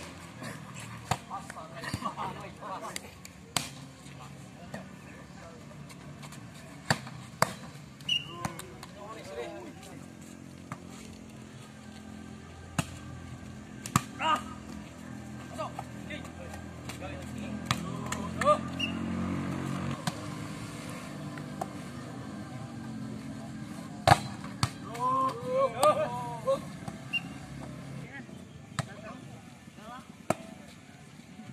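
A volleyball rally: the ball struck again and again by players' hands and forearms, sharp single slaps a few seconds apart, the loudest a little before the end. Short shouted calls from the players come between the hits, and a low rumble swells and fades in the middle.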